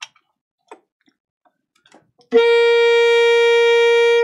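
A few faint clicks, then an alto saxophone sounding one long, steady note, the written octave G (sounding B-flat), starting a little over two seconds in. The note is in tune, bringing the tuner app to its green mark.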